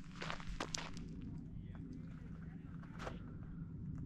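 Footsteps on a gravel and dirt road, faint, irregular steps.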